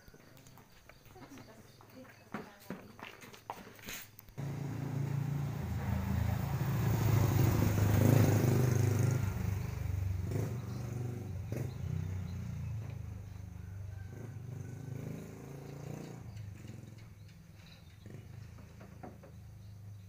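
A motor vehicle's low engine rumble that starts suddenly about four seconds in, swells to its loudest a few seconds later, then slowly fades away.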